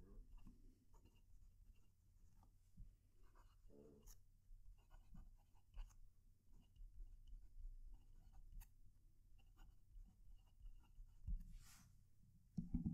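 Faint scratching of a fine-nib Hong Dian Black Forest fountain pen writing on lined notebook paper, the nib's light feedback audible with each stroke.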